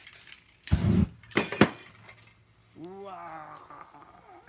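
A heavy knock followed by two sharp clinks of hard objects on the work table, then a short voice-like call that rises and falls in pitch.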